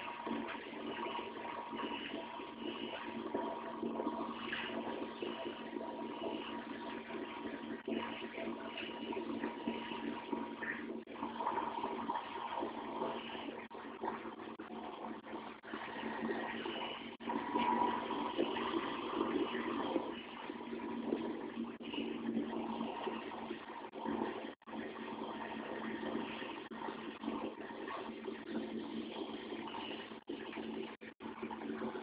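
Fire apparatus running, a steady engine hum under a continuous rushing noise, with a brief dropout near the end.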